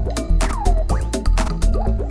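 Minimal house music: a steady kick drum about twice a second under fast ticking hi-hats, with a quick falling-pitch blip about half a second in.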